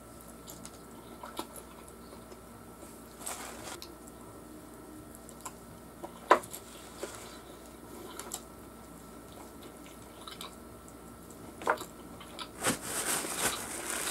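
Close-up eating sounds of someone biting and chewing fried chicken wings: quiet, wet mouth noises with scattered short smacks and clicks. A louder burst of noise comes near the end.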